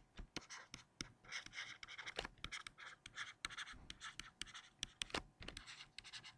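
Stylus writing on a tablet screen: faint, quick scratches and small taps as letters are drawn, in an irregular string.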